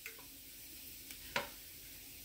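Cumin seeds sizzling faintly in hot oil in a frying pan, a steady high hiss with a few sharp crackles, the loudest a little over a second in.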